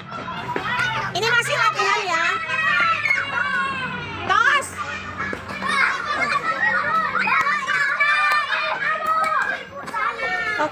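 A group of young children shouting and chattering at once, many excited voices overlapping, with one sharp rising shout about four seconds in.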